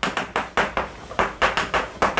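Chalk writing on a chalkboard: an irregular run of sharp taps and short scratches as the chalk strokes out letters.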